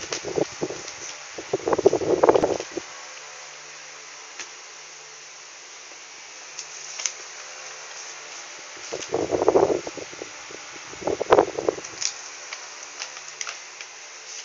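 Steady low whir of a running fan, with a cluster of short rustling noises in the first three seconds and two more about nine and eleven seconds in.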